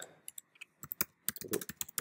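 Keystrokes on a computer keyboard as a line of code comment is typed: an irregular run of quick clicks, sparse at first and quicker in the second half.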